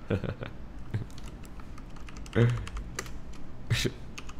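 Typing on a computer keyboard: an irregular run of key clicks as a search query is typed, with a brief sound of voice about halfway through.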